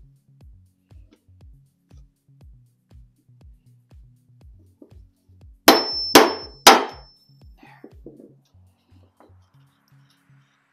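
Claw hammer striking the end of a screwdriver held against a wooden table leg to free a stuck flathead screw: three hard blows about half a second apart with a high metallic ring, over background music with a steady beat.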